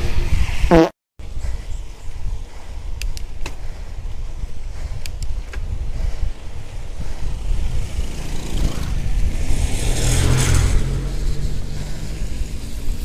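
Wind buffeting the camera microphone while riding a bicycle on a wet road: a steady low rumble with tyre noise. Near the end it grows louder, with a low hum underneath.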